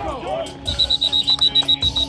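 Whistle blown in a rapid high trill, starting about two-thirds of a second in, signalling the end of the play, over background music.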